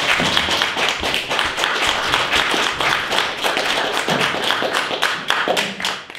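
Audience applauding, many hands clapping in a dense, steady patter.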